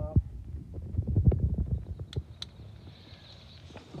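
Low thumps and rumbling from handling and work at the compartment, then two sharp clicks about a quarter second apart halfway through, followed by a faint steady hiss.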